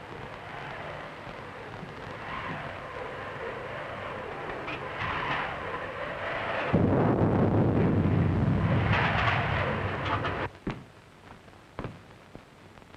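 An ape screaming offscreen: a rough, noisy cry that swells over several seconds, is loudest for its last few seconds, then breaks off sharply near the end.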